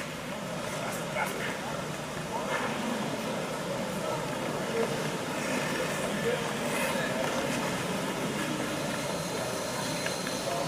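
Indistinct talk and murmur from a group of ice hockey players and staff standing on the ice of a large, echoing rink hall, over a steady background rumble.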